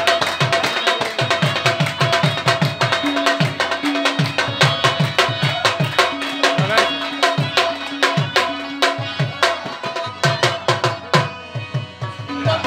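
Live Pashto folk music, instrumental: hand drums in a fast, steady rhythm under harmonium holding long notes, with no singing.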